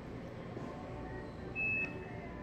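A single short, high beep from a handheld barcode scanner about a second and a half in, over steady store background noise.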